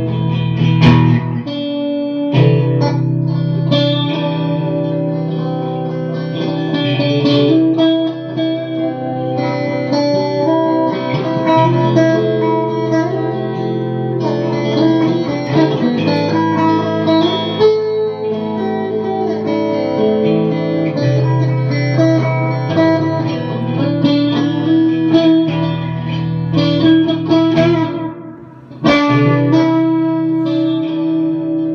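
Electric guitar played through effects: ringing chords and single-note lines over sustained low notes. The sound dips briefly near the end before a loud chord comes back in.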